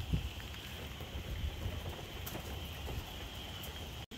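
Wind buffeting the microphone with a low, uneven rumble, over a faint steady outdoor hiss.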